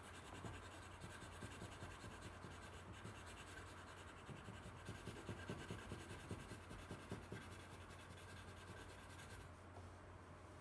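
Colored pencil rubbing back and forth on paper in quick, faint strokes, blending the color in. The strokes stop shortly before the end, over a steady low hum.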